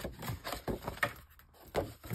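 Sheet of heavy white card stock being handled on a plastic paper trimmer: a few light knocks and scrapes as the card is lifted, turned and set back down.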